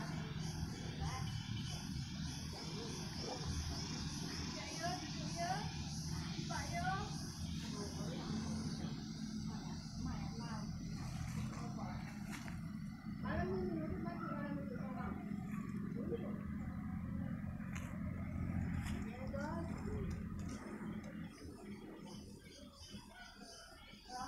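Indistinct voices of people talking off camera, over a steady low rumble of outdoor ambience. A faint, regular high ticking runs through the first third, and the sound fades somewhat near the end.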